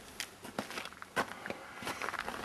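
Footsteps crunching on packed snow, about four steps.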